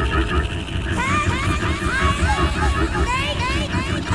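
Experimental avant-garde vocal music: many overlapping short rising vocal swoops, layered into a babble of voices over a dense low rumble. The swoops thicken about a second in.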